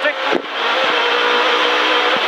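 Rally car engine heard from inside the cabin, pulling hard at speed down a straight. Its note breaks briefly about half a second in, then holds steady.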